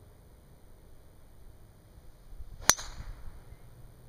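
Golf driver striking a teed golf ball: a single sharp crack about two and a half seconds in, with a brief ring after it.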